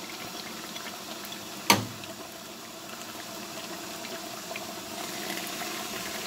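Large pot of meat and liquid simmering on the stove: a steady low bubbling hiss. One sharp knock a little under two seconds in.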